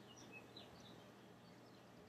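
Near silence: faint room hiss and hum with a few faint, short high chirps.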